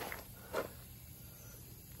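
Quiet outdoor background in a pause between words, with one short soft noise about half a second in.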